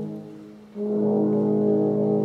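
A quartet of French horns playing slow, held chords: one chord fades away, and a new sustained chord comes in just under a second in and holds.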